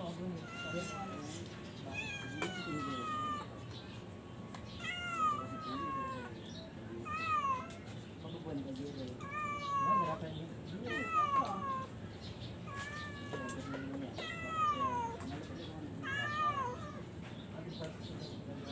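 A cat meowing over and over, about nine high meows that each fall in pitch, spaced a second or two apart.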